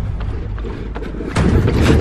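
Wind buffeting the microphone of a camera carried at a run, a heavy low rumble with footfalls on a wooden boardwalk; it gets louder about one and a half seconds in.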